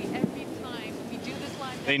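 Faint, distant voices over a steady hiss, with a man's voice starting right at the end.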